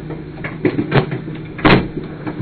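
A few short knocks and clunks, the loudest one near the end, as objects are handled and set down.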